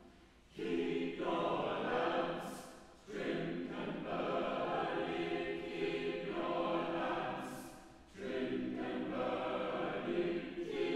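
Choir singing an Advent carol in phrases, with short breaths between phrases about three seconds in and again about eight seconds in.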